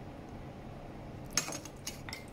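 Faint steady room hum, then past the halfway point one sharp clink of a metal spoon followed by a few lighter taps, as corn flour is tipped from a spoon onto chicken in a ceramic bowl.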